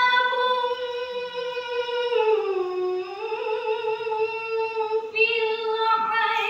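A high solo voice reciting the Quran in the melodic tilawah style, holding long drawn-out notes; the melody sinks about two and a half seconds in and climbs back up.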